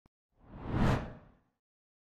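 A single whoosh sound effect for an animated title logo, swelling up to a peak just under a second in and fading away by about a second and a half.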